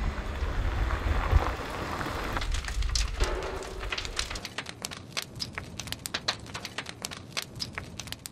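A house fire burning. A loud low rumble for the first couple of seconds gives way to dense, irregular crackling and popping of burning timber.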